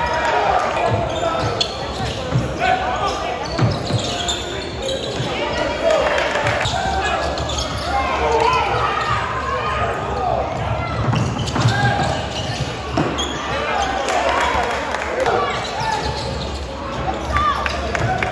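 Basketball bouncing on the court during live play, echoing in a large gym hall, with voices calling out over it.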